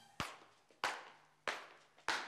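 Three sharp hand claps in a slow, steady beat, about two-thirds of a second apart, each ringing briefly in a hard-walled space.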